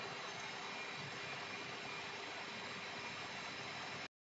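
Steady, faint hiss of background noise from a home webcam microphone, with a faint steady hum.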